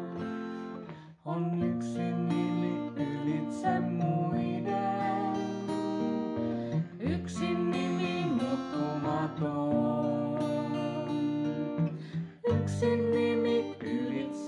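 A woman and a man singing a song together to an acoustic guitar, with short breaks between phrases about a second in and near the end.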